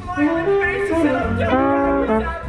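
Trombone playing a phrase of several held notes, close up, within a theatre pit orchestra.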